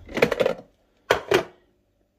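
Hard plastic clicks and rattles as the bowl of a Ninja Creami ice-cream maker is twisted and unlatched from the machine's base. A short run of rattling comes first, then two sharp clicks a little after a second in.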